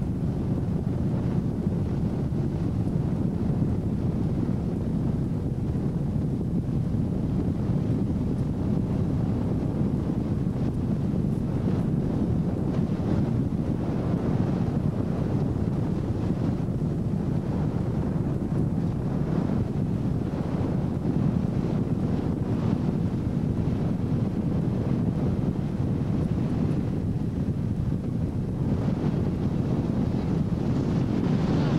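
Ski boat's engine running steadily under way, with wind buffeting the microphone and water rushing past the hull.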